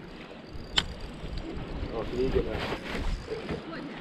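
Faint voices in the background over a steady low rumble, with one sharp click about a second in.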